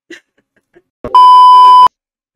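A loud censor bleep: one steady, high beep lasting under a second, starting a little after a second in and cutting off abruptly.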